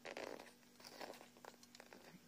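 Faint handling noise as a phone camera is lifted and turned: a short rustle at the start, then a few light clicks and taps.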